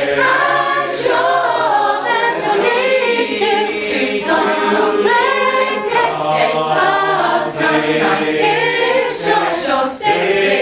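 A cappella choir singing in several parts, live, with a low held note under moving upper voices.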